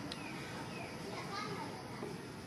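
Background voices talking, too unclear to make out words.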